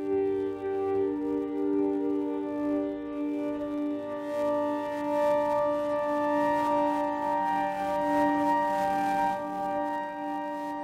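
Soundiron Olympus Choir Micro's 'Distender' effects preset playing: a processed choir sample held as a sustained chord of several steady tones, with a low note dropping out about a second in.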